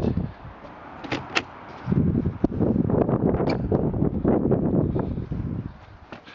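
Someone stepping up into a touring caravan through its door: two light clicks about a second in, then a few seconds of low thumps and rumble from their steps on the step and floor.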